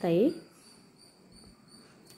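The end of a woman's spoken word, then a quiet stretch holding only a faint, steady high-pitched tone.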